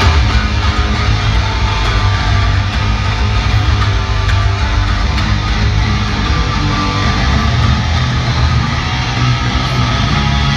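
Live electric guitar and bass guitar playing a punk rock instrumental through an arena sound system, the bass coming in sharply at the start.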